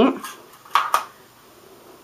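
Two short metallic clicks a little under a second in: small bobby pins being handled and clinking in their container.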